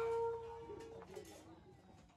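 The close of a Sasak gendang beleq ensemble's music: one held, pitched tone rings on and dies away about a second in, and the sound fades to a faint background.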